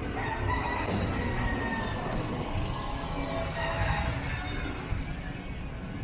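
A rooster crowing over a steady street hum, with music playing in the background.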